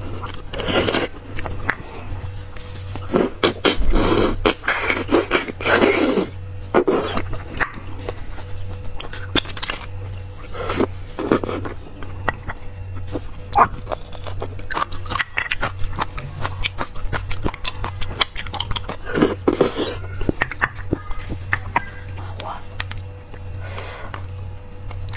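Close-miked eating sounds: a person sucking and chewing beef bone marrow, with wet slurps, smacks and clicks coming in irregular bursts, busiest about three to seven seconds in and again near twenty seconds. A steady low hum runs underneath.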